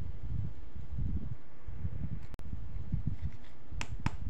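Hands handling small plastic toy make-up pieces close to the microphone, giving a low, uneven rumbling handling noise. The sound drops out briefly in the middle, and a few sharp plastic clicks come near the end.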